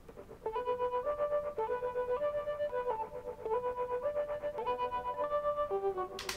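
Layered synthesizer lead patches played on their own: a repetitive melody doubled in octaves, stepping up and down in quick pulsing notes.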